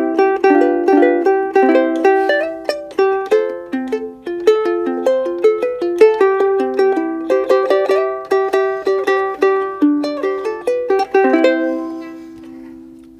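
A roughly 130-year-old ukulele with no fretboard is played solo as a plucked melody over chords, several notes a second. Near the end a last chord rings out and fades.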